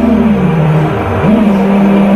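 FPV quadcopter's brushless motors whining, the pitch rising and falling with the throttle, dipping and climbing again about a second in, over background music.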